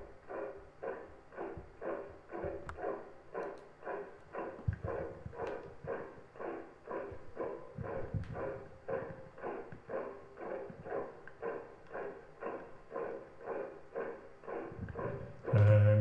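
Even, regular marching footsteps, about two steps a second, with a few sharp clicks. A man's singing voice comes in loudly near the end.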